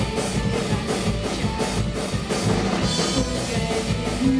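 Live folk-rock band playing, with a drum kit keeping a steady beat of about three strokes a second under electric guitar.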